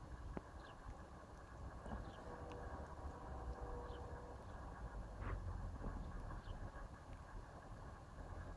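Distant train passing: a faint low rumble that grows louder about five seconds in.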